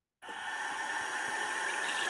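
Recorded sound effect of water running from a tap, starting suddenly a moment in after silence and running steadily.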